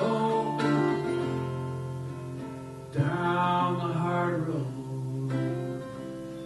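Acoustic guitar played solo in a live song, chords ringing and sustaining between sung lines, with a short vocal phrase about halfway through.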